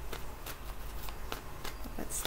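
A deck of tarot cards being shuffled by hand, a run of irregular card snaps and flicks about three a second.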